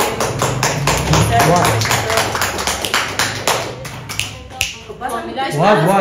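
A fast, steady run of sharp taps, several a second, which thins out about five seconds in, followed by a voice near the end.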